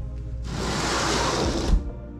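Background music plays throughout. About half a second in, a rush of hissing noise lasts just over a second and ends in a brief knock.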